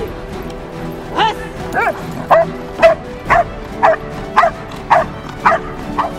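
Belgian Malinois barking in an even rhythm, about nine barks at roughly two a second, over background music.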